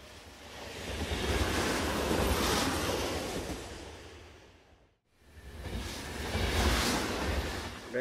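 Rumbling, rushing noise of a train heard from inside the carriage, swelling and fading twice, with an abrupt break to silence about five seconds in.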